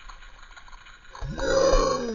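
A man's drawn-out groan from the shock of being doused with ice-cold water, starting about a second in, loud, then sliding down in pitch. Before it, only faint dripping ticks.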